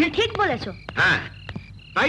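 Frogs croaking, a quick series of separate calls.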